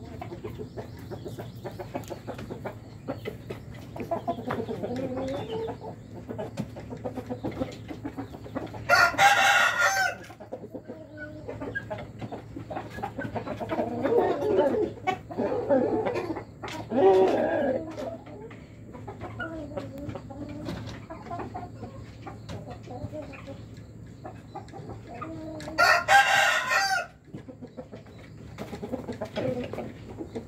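Young chickens clucking, with a rooster crowing loudly twice, about nine seconds in and again near the end.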